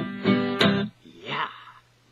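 Acoustic guitar strummed in quick chords, the closing strums of the song, breaking off about a second in. A short voice sound follows.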